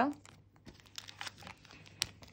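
Thin clear plastic sleeve and film crinkling and crackling in the fingers as small nail decal sheets are handled, a scatter of light crackles and clicks.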